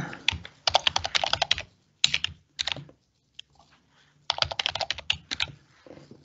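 Typing on a computer keyboard: a quick run of keystrokes about a second in, a few shorter groups of keys, then another fast run about four seconds in.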